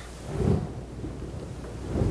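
Low muffled rumbles of a clip-on microphone rubbing against a shirt as the wearer moves, one about half a second in and another near the end, over a steady low room hum.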